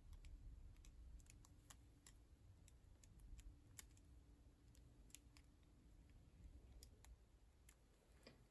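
Faint, irregular clicks of rubber loom bands being pulled and stretched over a metal crochet hook, against near-silent room tone.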